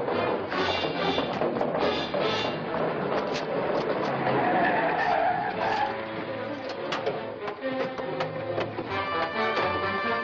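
Dramatic background music from the serial's score.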